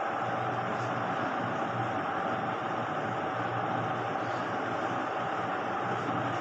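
Steady, even background noise with a faint low hum, like a machine running continuously.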